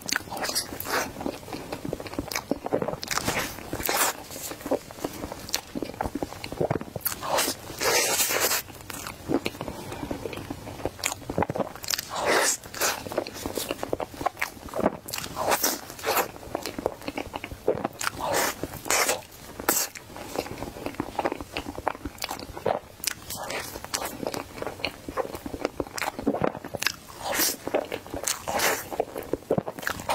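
Close-miked mouth sounds of someone biting and chewing a matcha crepe cake: a steady stream of irregular short clicks and bursts, several a second.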